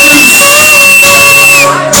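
Two acoustic guitars strummed while a man sings into a microphone, holding one long note. The music dips briefly in loudness just before the end.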